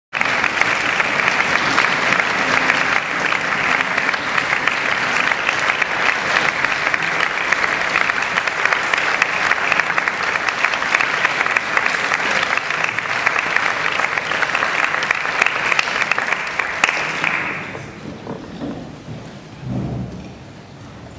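Concert audience applauding steadily, the dense clapping dying away about three seconds before the end.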